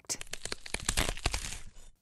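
Crackling, crunching sound effect made of many quick sharp cracks, running for nearly two seconds and cutting off just before the end.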